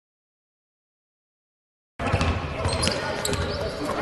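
About two seconds of silence, then the sound of a basketball practice gym in a large hall: a basketball bouncing on the court, with a couple of short high squeaks.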